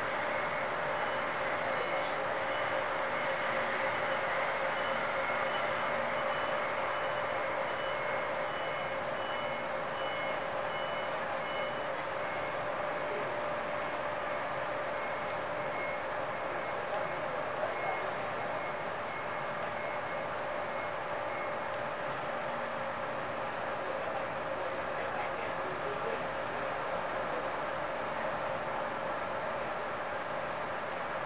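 Forklift reversing beeper sounding a regular series of high beeps that stops about two thirds of the way through, over a steady engine and machinery hum.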